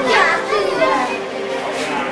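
Background chatter of several voices at once, children's voices among them, talking and calling over one another.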